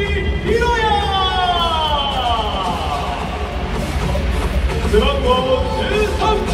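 Stadium PA announcer calling out the starting pitcher's name in a long, drawn-out voice that falls slowly in pitch, over background music. A second, shorter call comes near the end.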